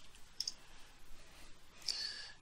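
Faint clicks from computer input, a small one about half a second in and another near the end.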